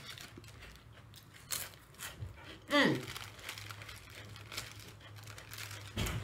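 Foil potato chip bag crinkling as it is handled, with a short hummed vocal sound falling in pitch just before halfway. A low steady hum comes in about halfway.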